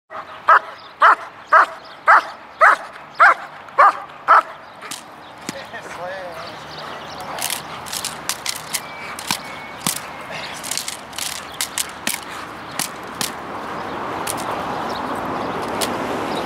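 A German Shepherd barking, about eight loud barks at roughly two a second in the first four seconds. Once it is on the helper's bite suit, sharp cracks come at irregular intervals, typical of a helper's stick hits in protection training, over a rising steady noise.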